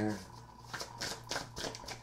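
A tarot deck being shuffled by hand: a few short, quick card rustles and clicks.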